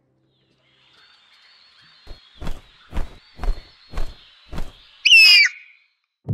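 Brand sound logo: about six low thumps come at roughly two a second over a faint high whistling tone. Near the end a single loud, harsh cockatoo screech follows.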